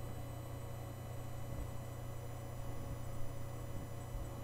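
Steady low hum: room tone, with no distinct sound standing out.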